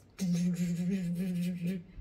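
A woman's voice holding one steady, slightly wavering low note for about a second and a half, a vocalised sound rather than words.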